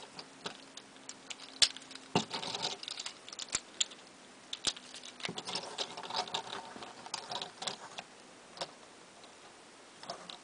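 Plastic parts of a small Transformers Generations Scoop action figure clicking and rubbing as it is handled, with a small partner figure pulled off and the robot's limbs set. Irregular sharp clicks, the loudest about one and a half seconds in.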